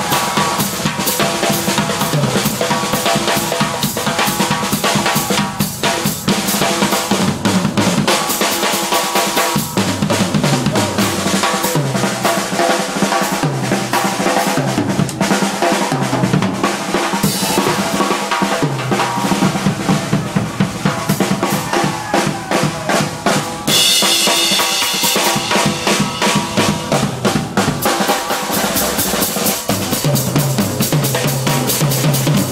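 Drum kit solo played live: fast snare and bass drum strokes throughout, with cymbals washing over the last several seconds.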